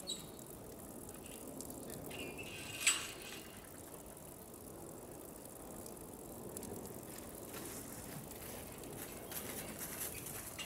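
Water trickling into an outdoor hot-spring pool, a steady low wash of noise, with one brief sharp high sound about three seconds in.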